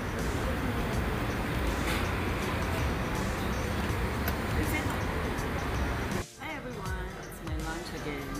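Steady outdoor traffic noise with background voices and a few faint clicks of cutlery on a plate. About six seconds in it cuts off abruptly and background music with a melody begins.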